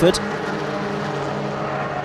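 Several BMW E36 318ti Compact race cars with 1.9-litre four-cylinder engines running together at a steady pitch on the track.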